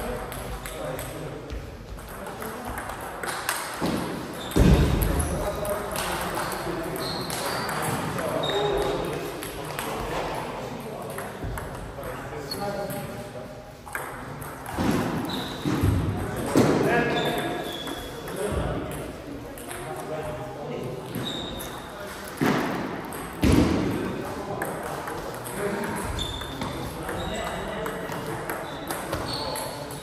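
Table tennis rallies: the celluloid-type ball knocking sharply back and forth off rubber bats and the table top in quick, uneven strokes, with a few louder hits.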